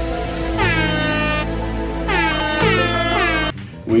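Meme-style air-horn blasts over music with a steady bass underneath. Each blast slides down in pitch, and the sound cuts off suddenly about three and a half seconds in.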